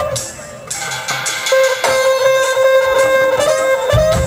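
A live band plays an instrumental percussion jam, with a sustained melody line held over drums and percussion.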